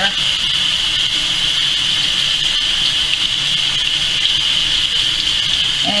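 Kitchen faucet running steadily, water pouring over hair and splashing into a stainless steel sink as shampoo is rinsed out; a constant, even hiss.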